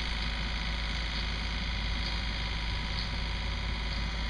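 Steady drone of a running engine, heard outdoors at a distance, with an even low rumble throughout and no sudden changes.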